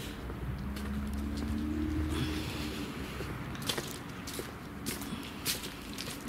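Footsteps on a path strewn with dry fallen leaves, about two steps a second, clearest in the second half. During the first half or so, a steady low engine hum from a vehicle on the road.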